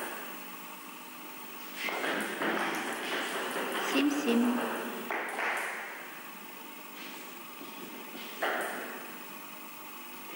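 Table tennis ball being struck with rubber-faced bats and bouncing on the table during a rally.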